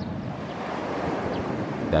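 Steady noise of sea surf breaking on the beach, mixed with wind on the microphone.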